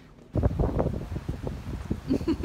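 Wind buffeting a phone's microphone in rough gusts, starting suddenly about a third of a second in.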